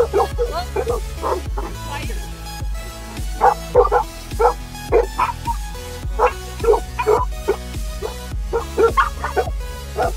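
Dogs barking and yipping in several short, sharp bursts over background music with a steady bass beat.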